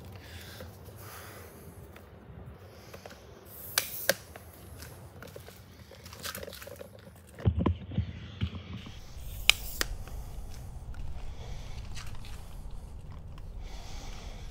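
Handling noise of a camera being carried and set up: scattered rustles and clicks, two sharp clicks about four seconds in, a cluster of low knocks around eight seconds, and another sharp click soon after. A steady low hum follows through the rest.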